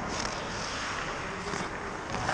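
Hockey skate blades scraping and gliding on rink ice, with two short hissing swells, over a steady background drone in the rink.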